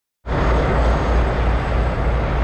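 Steady, loud rumbling vehicle noise, like road and engine noise heard inside a moving vehicle, cutting in abruptly just after the start.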